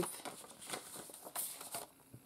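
Paper envelopes rustling and sliding against each other as they are handled and fanned out by hand: faint, irregular crisp rustles.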